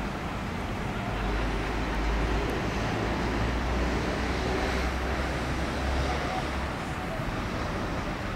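Steady outdoor background noise with a low rumble that builds about a second in and eases near the end.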